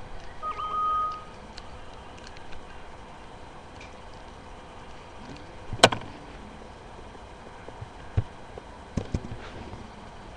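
Handling noise of a plastic action figure: one sharp click about six seconds in and a few soft knocks near the end. A brief steady high tone sounds near the start.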